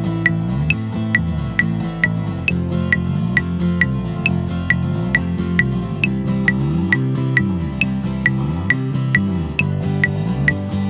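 Backing track of a worship song with bass and guitar playing over a metronome click at 135 beats per minute. The click is steady, with a higher-pitched click on the first beat of every bar of four.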